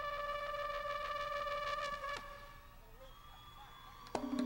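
A trumpet holds one long high note with bright overtones, then cuts off about two seconds in, leaving a quieter stretch.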